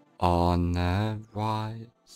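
A man's deep voice intoning two drawn-out sounds, the first about a second long and the second shorter, held at a low, nearly steady pitch like a chant.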